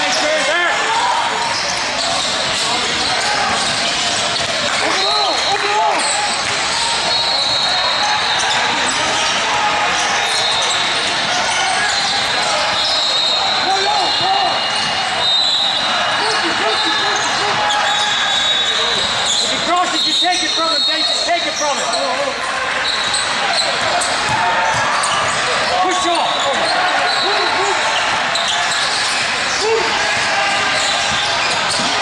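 Basketball game sounds in a large echoing hall: a ball bouncing on the court, short high sneaker squeaks, and players and spectators calling out and talking.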